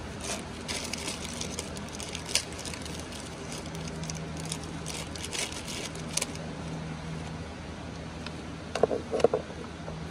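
Light clicks and small rattles of small parts being handled, scattered through the first six seconds, with a few louder knocks near the end, over a steady low hum.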